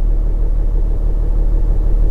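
Kia Mohave The Master's V6 diesel engine idling, a steady low rumble heard from inside the parked cabin.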